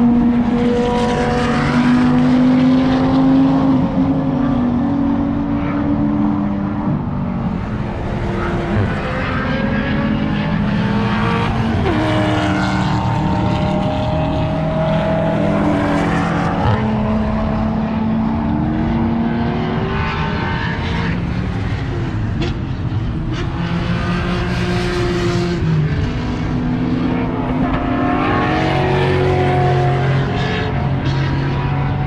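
Race car engines at high revs on the circuit, loud and continuous, the pitch climbing through each gear and dropping at the shifts as cars pass one after another.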